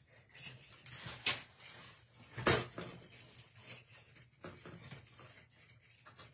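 A few soft knocks and rustles of small craft pieces being handled on a tabletop, the loudest knock about two and a half seconds in.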